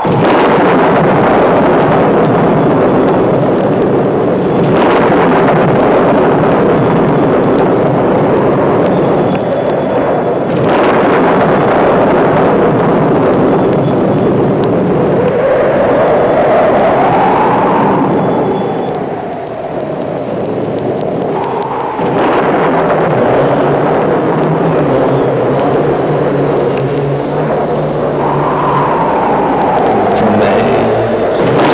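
Loud, sustained rushing noise in an experimental sound collage, shifting in character every few seconds, with a whoosh that rises and falls about two-thirds of the way through and a low hum coming in near the end.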